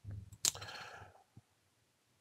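Faint computer mouse click about half a second in, followed by a short, soft breath that fades out within half a second.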